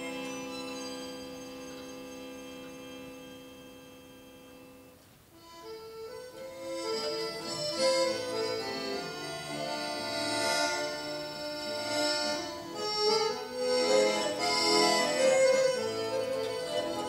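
A small live ensemble of accordion and violin playing: a long held chord slowly fades over the first five seconds, then the music starts again about five seconds in with a moving melody over chords, growing louder.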